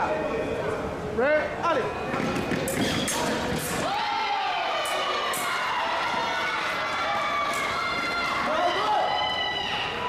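Shouting voices over a sabre fencing bout: drawn-out cries that rise and fall in pitch, with quick footwork and a run of sharp clicks from the bout about three to five seconds in.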